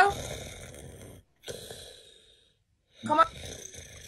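A person snoring twice over a video-call line: two rough breaths of about a second each, with a short gap between them.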